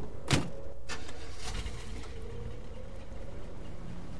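Car sound effects: a car door shuts with a thump about a third of a second in and there is a second knock just before one second, over the steady hum of a car engine running.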